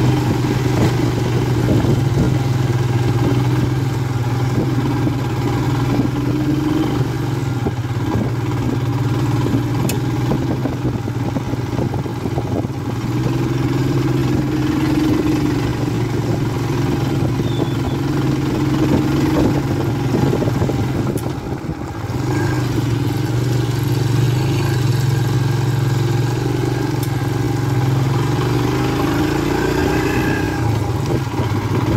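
Royal Enfield Himalayan's 411 cc single-cylinder engine running steadily under way on the move, heard from the rider's seat. The engine note dips briefly about two-thirds of the way through, then picks up again.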